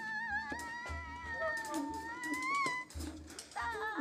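Jazz quartet of piano, alto saxophone, double bass and drum kit playing live. A long melody note with vibrato rises at the end of its phrase and breaks off about three seconds in, over regular low pulses and light cymbal strokes.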